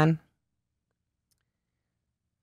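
A woman's voice finishing a word, then near silence.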